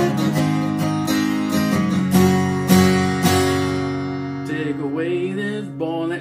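Epiphone Masterbilt acoustic guitar, tuned down a half-step to E-flat, strumming open chords, with several strong strokes in the first half. A chord is then left to ring out, and a voice comes in over it near the end.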